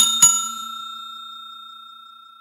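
Notification-bell sound effect of a subscribe animation: a bright bell ding struck twice in quick succession, then ringing on and fading steadily.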